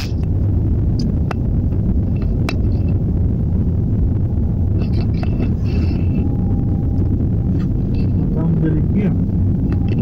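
Car driving along a rough dirt track, heard from inside the cabin: a steady low rumble of engine and road noise, with a few sharp clicks or knocks in the first few seconds.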